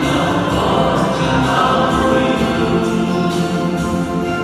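A Vietnamese Catholic hymn sung by a choir over instrumental accompaniment, at a steady level throughout.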